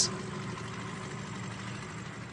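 A steady low hum with a faint hiss over it, at a low level.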